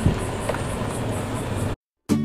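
Golf cart driving along a paved street: a steady rush of ride and wind noise, with a faint high chirp repeating about four times a second. It cuts off suddenly just before the end.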